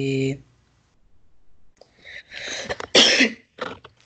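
A person coughing a few times, short rough bursts with the loudest about three seconds in.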